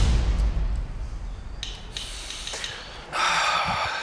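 Dramatic soundtrack: a deep, low booming rumble that fades out over the first second or so, then a loud hissing noise in the last second.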